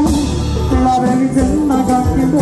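Live konpa band playing, with a male lead vocal singing over electric bass guitar and drum kit.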